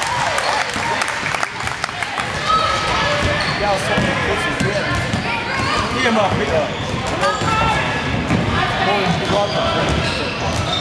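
Basketball bouncing on a hardwood gym floor during play, with spectators' and players' voices calling out over it, echoing in a large gym.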